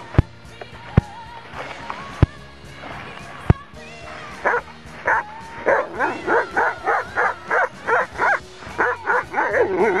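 Irish setter barking in a fast run of short barks, about three a second, starting about halfway through. Background music with a regular drum hit runs throughout.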